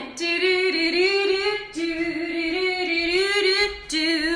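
A woman singing unaccompanied, the wordless 'doo doo-doo doo-doo doo' refrain of a children's action song, in two short phrases with a brief break between them.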